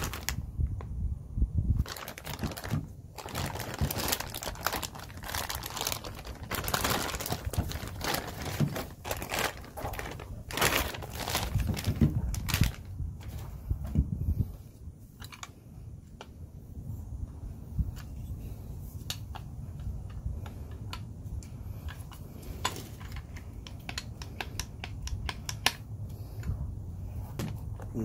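Plastic packaging crinkling and rustling while a new tailgate handle is unwrapped and handled, with many short sharp clicks and taps. The clicks come thick and fast in the first half, then thin out to scattered ticks.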